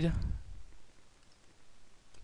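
A few faint clicks of a computer mouse over quiet room noise.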